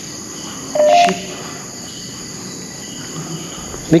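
Crickets chirring steadily at night, with a short two-note electronic beep, stepping up in pitch, about a second in.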